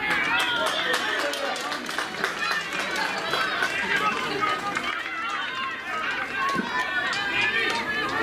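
Many high-pitched voices of players and spectators shouting and calling over one another, with scattered sharp clicks.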